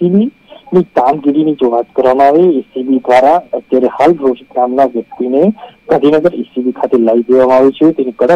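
Continuous narration by a voice heard over a phone line, thin and cut off in the highs, over a faint steady high tone.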